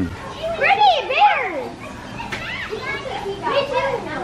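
Children's excited high-pitched squeals and laughter, a few rising-and-falling cries about half a second in, then more laughing voices near the end.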